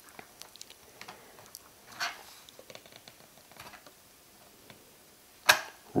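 Faint clicks and small handling noises of a DDR2 laptop RAM module being worked into a MacBook Pro's memory slot, with a brief louder rustle about two seconds in and a sharp click near the end as the module snaps down into place.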